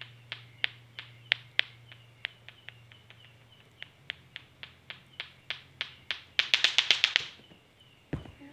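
Lato-lato clacker toy: two hard plastic balls on a string knocking together about three times a second, then a quicker, louder run of clacks near the end before it stops.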